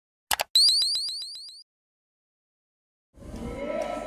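Electronic logo-sting sound effect: a brief burst, then a quick run of rising chirps, about eight a second, that fade out within about a second. About three seconds in, crowd noise and music start to rise.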